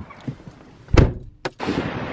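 A car door being shut with one heavy thunk about a second in.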